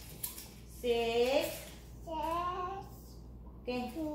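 A toddler's voice: two drawn-out calls with gliding pitch, one about a second in and one just after two seconds.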